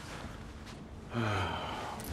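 A person's breathy voiced sigh about a second in, falling in pitch.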